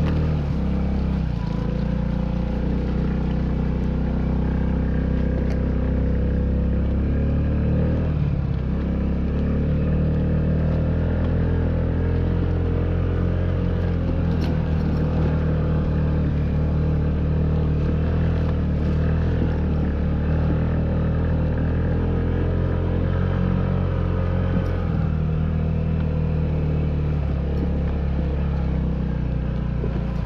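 Honda Ruckus scooter's small four-stroke single-cylinder engine running steadily under way, riding over a rough dirt track, with only slight changes in pitch.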